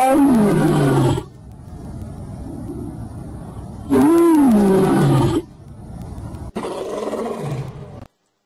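A lion roaring: a loud roar that slides down in pitch at the start, a second loud one about four seconds in, and a weaker one near the end, with lower, quieter rumbling between them.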